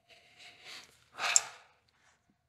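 A man nosing whisky held in a tulip glass under his nose, breathing in through it: a soft, drawn-out sniff, then a shorter, louder breath about a second in.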